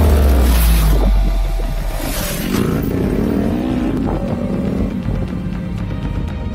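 A car passes by, its engine note dropping in pitch in the first second, over background music that plays throughout.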